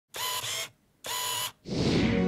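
Two short synthetic sound-effect bursts of about half a second each, with a brief gap between them, then electronic music swelling in near the end.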